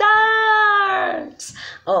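A woman's voice holding one long, drawn-out sung vowel that sags slightly in pitch and stops about a second and a half in, followed by a breath and a short "oh" near the end.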